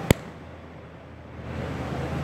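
A single sharp click just after the start, over low steady background noise with a low hum. The noise dips after the click and comes back about a second and a half later.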